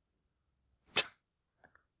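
Near silence, broken once about a second in by a single short, sharp noise, then a couple of faint ticks.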